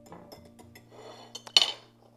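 Small wire whisk stirring dry flour in a ceramic bowl, with faint scraping and light ticks, then one sharp clink of the metal whisk against ceramic about one and a half seconds in.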